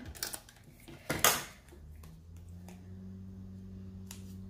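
Small clicks and taps of paper and a plastic tape runner being handled on a wooden desk, with one louder knock about a second in. A low steady hum starts about halfway through and holds.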